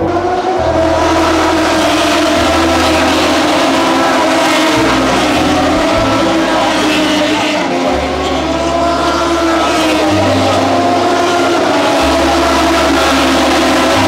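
Several MotoGP racing motorcycles running at speed on a wet track in heavy rain, their engine notes overlapping and holding a fairly steady pitch over a continuous hiss.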